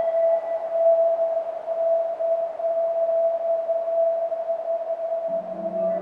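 A single steady electronic tone held for several seconds over a faint hiss, from a logo jingle pushed through a heavy audio-effects chain. Higher tones above it die away within the first second, and a low chord comes in near the end.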